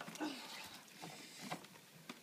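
A wet dog shifting in a plastic cooler box of bath water, with light splashing and sloshing and a short exclamation just after the start.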